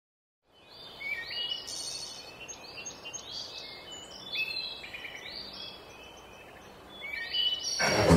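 Songbirds chirping and singing, many short high calls overlapping over a faint steady hiss of outdoor ambience; it fades in from silence about half a second in.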